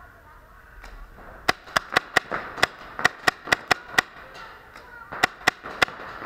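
Paintball marker firing in quick semi-automatic strings. About a second and a half in comes a run of about eleven sharp shots at roughly four a second, and near the end a faster burst of four.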